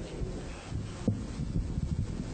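A congregation getting to its feet: low shuffling and rustling with a few soft knocks, the sharpest about a second in.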